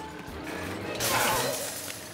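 A car's brake lever snapping off, heard as a sudden noisy crash and clatter about halfway through that lasts under a second, over background music.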